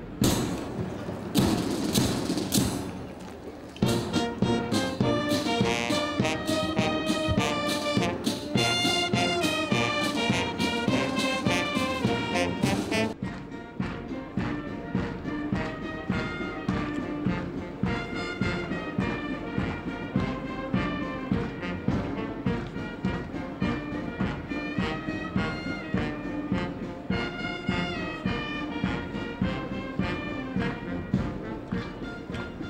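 Military brass band playing a tune with trumpets, trombones and sousaphones over a steady beat; the sound changes abruptly about 13 seconds in.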